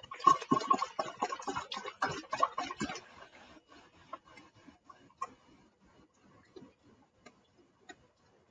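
Hot water poured through a funnel into a plastic soda bottle: dense splashing and gurgling for about three seconds, then trailing off into scattered faint drips and ticks.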